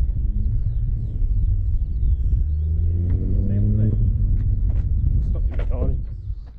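Wind rumbling and buffeting on the microphone of a camera fixed to an aircraft wing, a loud, uneven low rumble throughout.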